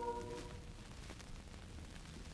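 The tail of a held choral chord from a glee club on a vinyl LP dies away about half a second in, leaving the record's faint surface noise: a low hiss and rumble with a few small crackles.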